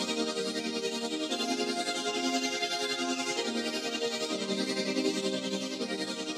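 Sustained synth-pad chords from a software synth playing back, with a new chord every second or two and a fast, even wavering in level.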